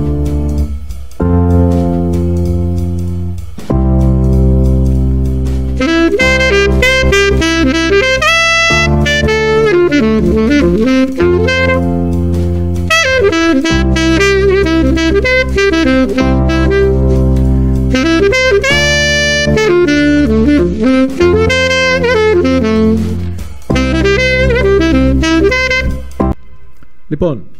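Alto saxophone improvising a rhythmic jazz line on chord tones over a backing of held electric-piano chords that change every two seconds or so. The saxophone comes in about six seconds in, on a ii–I progression of D minor and C major chords.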